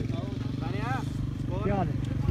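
A small engine running steadily at a low, even pulse, with two drawn-out shouted calls from voices rising and falling over it, about a second apart.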